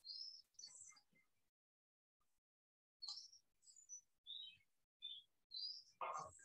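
Faint, intermittent bird chirping: short high calls, some sliding down in pitch and some up, with a pause in the middle.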